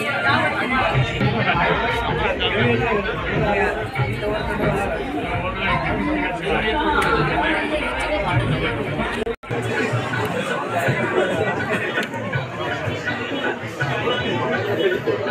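Indistinct chatter of many people talking at once, with no single voice standing out. The sound breaks off for an instant about nine seconds in.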